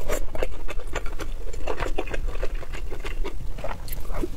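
Close-miked chewing and mouth sounds of eating soft rice mixed with egg sauce: a dense run of irregular wet clicks and smacks.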